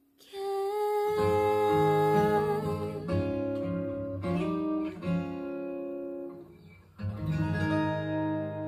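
Acoustic guitar instrumental outro: a single held note, then picked and strummed chords from about a second in that ring out and fade, with a new chord struck about seven seconds in.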